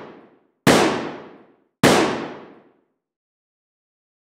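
Gunshot sound effects: two shots about a second apart, each with a long echoing decay, following the fading tail of a first shot.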